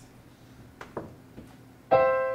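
A C major triad (C–E–G), the I chord in the key of C, struck once on a piano near the end and left ringing as it slowly decays.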